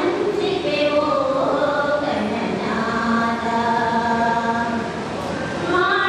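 A group of women singing a prayer song in unison, with a long held note in the middle.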